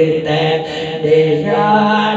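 A man chanting a Saraiki devotional zikr into a microphone in long held melodic phrases. The pitch steps up about one and a half seconds in.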